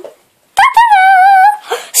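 A child's voice making a high-pitched dog-like whine for a plush toy dog: one held call about a second long, starting about half a second in, with a slightly wavering pitch.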